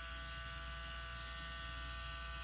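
Battery-powered Dremel rotary tool with a small drill bit running free, not yet touching the bead: a steady buzzing whine that holds one pitch.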